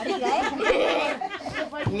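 Voices talking, several at once, with no clear words.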